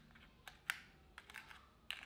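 A few faint, sharp plastic clicks and taps, irregularly spaced, as a hard plastic minnow lure and fingers knock against the compartments of a clear plastic lure box.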